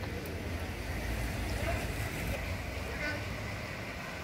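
Quiet city street ambience: a steady low rumble of vehicle traffic with no sharp events.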